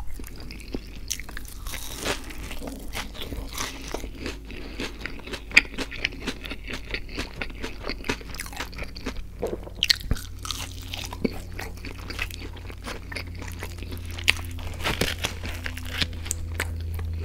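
Close-miked chewing and biting of a McDonald's sausage patty and hash brown: a steady run of many small sharp mouth clicks and smacks, with a few louder bites.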